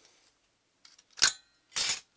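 Thin aluminium cooling fins from a microwave-oven magnetron clinking as they are pulled free and dropped onto a pile of scrap fins. There is a faint click, then a sharp metallic clink with a brief ring about a second in, and a shorter clatter near the end.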